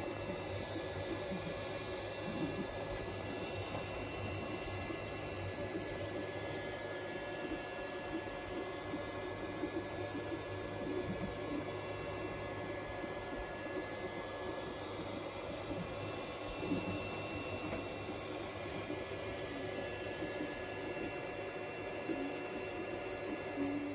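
3D printer running mid-print: cooling fans humming steadily under the whine of the stepper motors, several thin tones that come and go as the head moves.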